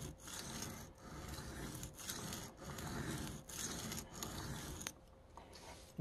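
Knife blade being stroked back and forth across a wet Venev diamond sharpening stone, about six strokes in quick succession, stopping about five seconds in. The strokes work the tip of the edge.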